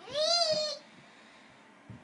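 A toddler's short, high-pitched vocal call, one wordless "aah" that rises and then falls in pitch, lasting under a second near the start.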